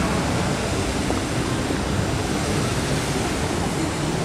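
Steady rushing and splashing of the Bellagio fountain's water jets spraying arcs into the lake.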